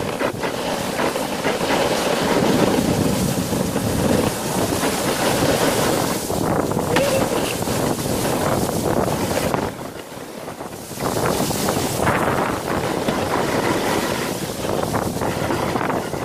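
Sled sliding fast down a packed-snow run: a continuous scraping hiss of the sled on snow, mixed with wind buffeting the microphone. The noise drops off for about a second about ten seconds in, then picks up again.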